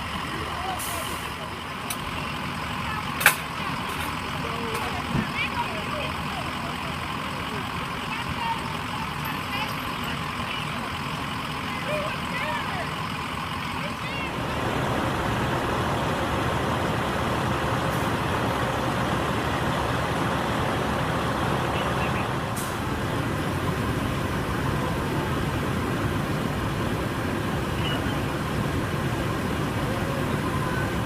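Indistinct voices over steady vehicle noise, then about halfway through a steady, louder running engine takes over.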